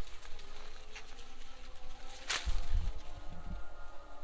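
Maize stalks and leaves rustling as a hand pushes into them, with one sharp loud crack about two and a half seconds in, then low wind rumble on the microphone. A faint steady drone of tones runs underneath.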